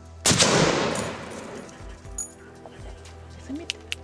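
A single hunting-rifle shot about a quarter second in, its report echoing and dying away over the next second or so. Two faint sharp clicks come near the end.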